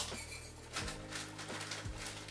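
Quiet background music with a few light clicks as wooden oak chips are tipped from a teaspoon through a plastic funnel into a glass demijohn.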